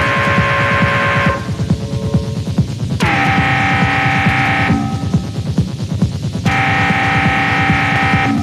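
Live hardware electronic music from a Behringer TD-3 and Cre8audio West Pest setup: a fast, rumbling low kick pattern runs throughout. Over it comes a held synth chord that swoops down in pitch as it starts, three times: near the start, about three seconds in and about six and a half seconds in.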